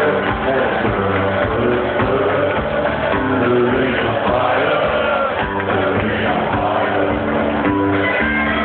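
Live band music with singing, with some crowd noise mixed in, sounding muffled with no treble.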